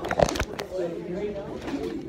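Handling knocks on a phone microphone, two sharp bumps in the first half-second, with voices talking quietly in the background.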